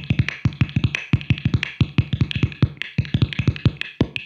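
Fender Jaguar electric guitar tapped by hand on its body, picked up by a contact mic built into the guitar: a fast, uneven run of percussive thumps, several a second, each with a short low ring, with a couple of brief pauses.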